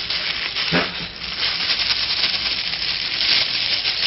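A plastic bag rustling and crinkling as it is handled close to the microphone, with a brief vocal sound about a second in.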